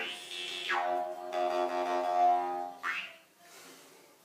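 Jaw harp (mouth harp) played as a steady drone on one pitch, its overtones sweeping up and down as the mouth shape changes; it fades out about three seconds in.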